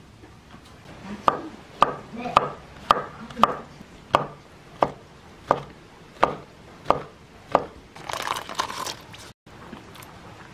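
Kitchen knife chopping shiitake mushrooms on a wooden cutting board: about a dozen sharp, evenly paced strokes, a little under two a second, followed by a brief rustling noise near the end.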